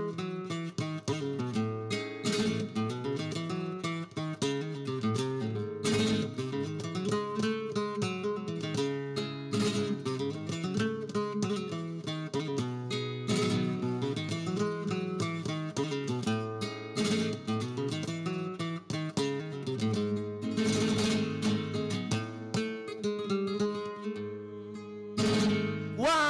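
Solo flamenco acoustic guitar playing an instrumental passage (falseta) between sung verses. Picked melodic runs are broken by strummed chords every few seconds.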